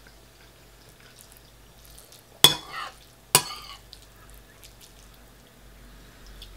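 Metal fork clinking and scraping against a bowl while scooping chilli and rice: two sharp strikes about a second apart midway through, each trailing into a short scrape.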